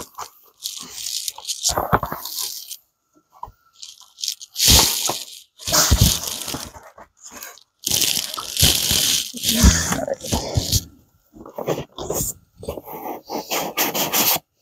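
Cardboard box and foam packaging being handled during an unboxing: irregular rustles, scrapes and crunches as panels and packed pieces are lifted and set down, with a few dull knocks.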